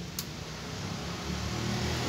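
A motor vehicle's engine coming closer on the street, its low rumble growing steadily louder.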